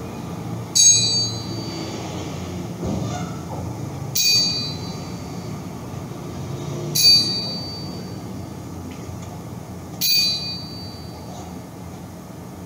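A small metal bell-like instrument struck four times, about three seconds apart, each a high clear ding that rings briefly and dies away.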